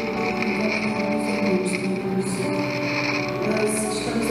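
Worship music on an acoustic guitar, with long held notes.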